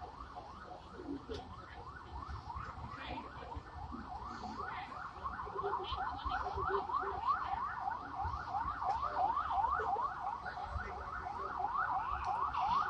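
An emergency vehicle siren in a fast yelp, quick rising sweeps about three a second, growing gradually louder.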